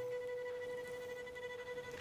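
A single held musical tone with overtones, fading slowly.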